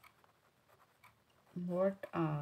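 Faint scratching of a pen writing on notebook paper, then a woman's voice begins speaking about one and a half seconds in.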